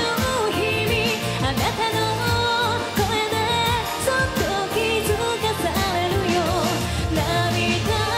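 A woman singing a J-pop song live with a band: drums, electric guitars and keyboards under the lead vocal.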